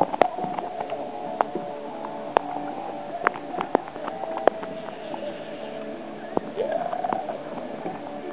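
A boat's motor running steadily, its pitch rising briefly about seven seconds in, with scattered sharp clicks and knocks.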